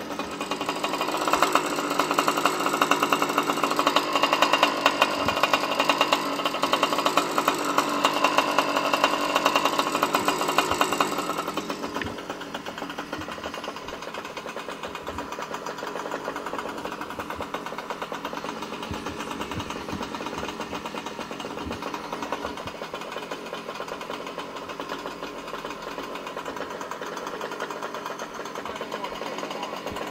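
Small gasoline engine of a stand-up scooter, running at speed while riding for the first ten seconds or so, then dropping to a steady idle once the scooter stops.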